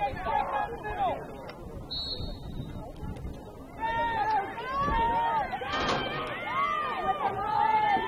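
Players and spectators shouting and calling out during live play, many voices overlapping; the shouting grows louder and busier about halfway through as players run upfield.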